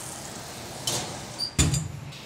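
A hot pan slid into a stainless-steel commercial range oven and the oven door shut: a short scrape about halfway through, a brief metallic ring, then a loud clunk of the door closing near the end, over a steady background hiss.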